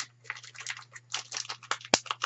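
Plastic chocolate-bar wrapper crinkling as it is worked open by hand, in quick irregular crackles, with one sharper snap near the end.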